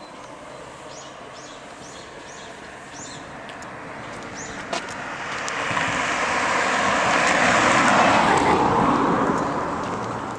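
A car passing along the road: its tyre and engine noise builds over several seconds, is loudest about eight seconds in, then fades. In the first few seconds a bird gives a run of short chirps, about two a second.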